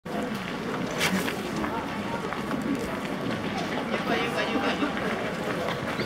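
Murmur of a large outdoor crowd, many people talking at once with no one voice standing out, with a single sharp click about a second in.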